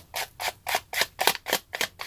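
A plastic-cased Distress Oxide ink pad tapped face down on a paper cutout in quick, even taps, about six a second, inking and distressing the paper.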